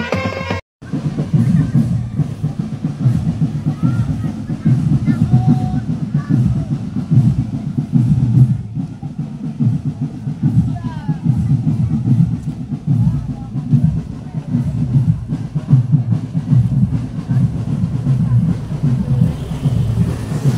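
A short piece of intro music that cuts off under a second in, then a marching drum band's drums, mainly bass drums with snare strokes, playing loudly with the voices of the marchers mixed in.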